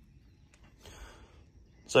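Mostly quiet, with a faint short rustle about a second in; a man's voice starts right at the end.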